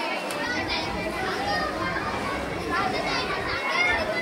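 Many children's voices talking over one another in a steady babble.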